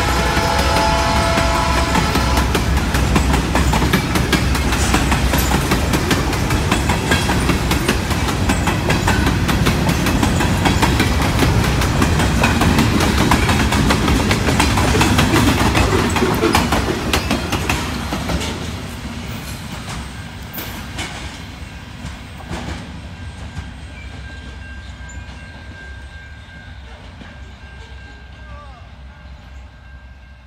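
Freight train cars, covered grain hoppers and tank cars, rolling past at speed with a dense rumble and clicking of wheels over the rail joints. A train horn sounds in the first two seconds and then stops. The last cars pass about 17 seconds in, and the sound fades away as the train moves off.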